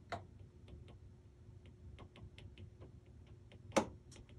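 Faint, irregular light ticks of a stylus tip tapping and sliding on a tablet's glass screen while writing, with one louder click near the end.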